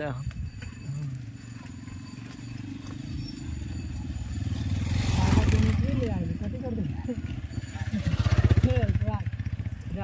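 A small engine running close by with a low, rapid pulse, growing louder around the middle and again near the end.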